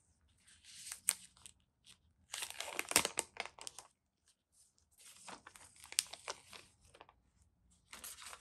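Crinkling and rustling of a phone's white protective wrap as it is unfolded and pulled off the phone, in three bursts with a few sharp crackles, loudest about three seconds in.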